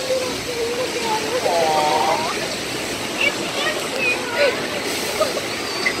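Log flume water rushing steadily, with a child's crying and whimpering rising over it about a second and a half in.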